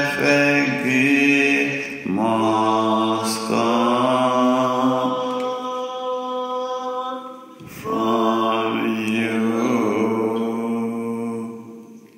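Unaccompanied singing in slow, long held notes, in the manner of a hymn or praise chorus, pausing briefly about two seconds in and again near eight seconds and fading out near the end.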